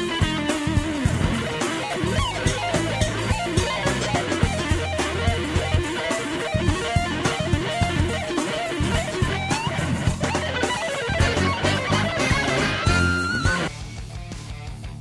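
Fast shred-style electric guitar solo played over bass and drums, with rapid runs of notes. It ends on a held high note, and the music cuts off suddenly at the end.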